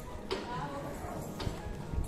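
Hard footsteps on paving, two sharp steps about a second apart, over street ambience with faint voices.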